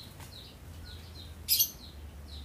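A small bird chirping over and over, short high notes about three to four a second. About one and a half seconds in comes a brief, loud, hissing slurp as a man sips coffee from a glass.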